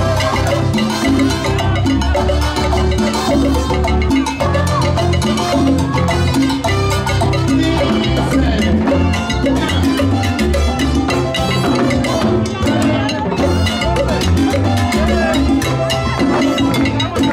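Live salsa music played loud through a PA: congas and timbales over a bass line, with a singer's voice on the microphone at times.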